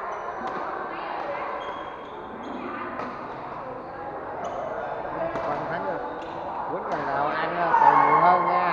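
Badminton rally: a racket strikes the shuttlecock in several sharp hits spaced a second or two apart, in a large hall over the chatter of onlookers.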